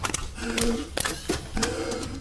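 Sharp mechanical clicks and clanks from a film's sound effects, about six spread over two seconds, with brief steady tones between them, as machinery works on a robot body.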